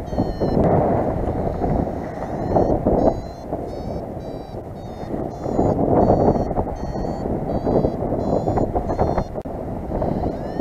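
Paragliding variometer beeping in short pulses, about two a second, their pitch stepping up and down: the climb tone of a glider rising in lift. Under it, wind rushes on the microphone, surging louder a few times.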